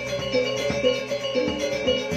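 Balinese gamelan gong ensemble playing: bronze metallophones and gongs ringing in a steady stream of quick, overlapping notes.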